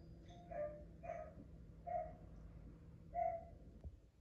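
Four short, faint whine-like sounds from a dog, unevenly spaced, over a low steady hum, with a single click near the end.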